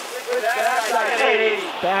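A commentator's voice in a high, drawn-out, wordless exclamation that rises and falls for about a second and a half, over the hiss of the live broadcast.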